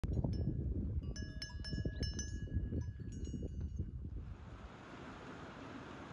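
Bells on grazing goats and sheep clinking and ringing at irregular moments over a low rumble. After about four seconds the bells stop and the sound drops to a steady soft hiss.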